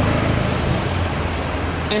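Street traffic: a motor vehicle's engine running close by, a steady low rumble with road noise that eases slightly.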